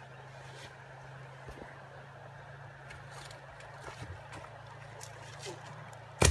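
Faint outdoor ambience: a steady low hum with a few light clicks and rustles; the hum stops near the end.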